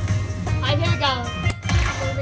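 Slot machine bonus-round music and chimes from a Dragon Link machine during a hold-and-spin respin, over a steady low hum. A short voice comes in about half a second in, and a sharp click follows about a second and a half in.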